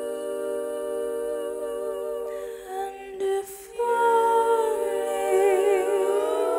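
Wordless female vocal humming long held notes, a breath taken about halfway, then a fresh note that slides down and wavers near the end.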